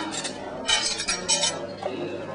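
Metal spoons clinking against stainless steel utensil containers and a sundae glass: a quick run of bright, ringing clinks from just under a second in.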